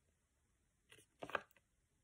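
A paper flashcard turned over in the hands: a brief faint rustle about a second in, otherwise near silence.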